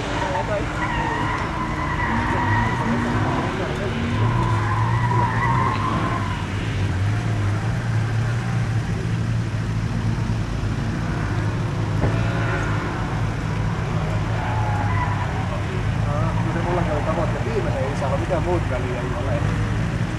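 A competition car's engine being driven hard around a tarmac circuit, heard from trackside as a steady low drone that carries on throughout. People talk over it at times.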